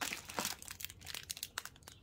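Thin clear plastic wrapping crinkling as a bagged artificial succulent is picked up and handled, a dense run of small crackles that is busiest in the first second.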